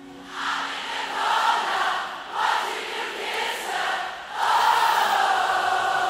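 A large concert crowd singing a song back in unison, thousands of voices blending into one mass. It fades in at the start and swells with each sung phrase, holding a longer line near the end.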